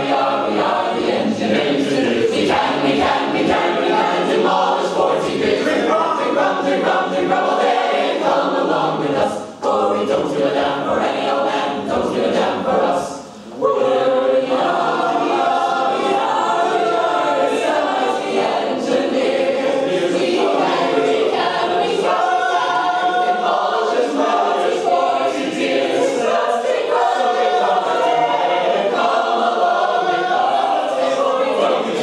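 Mixed men's and women's a cappella group singing a drinking song in chorus, unaccompanied, with two brief breaks in the sound about nine and thirteen seconds in.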